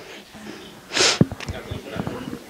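A man sniffs once through his nose, a short sharp intake about a second in, picked up close on a handheld microphone.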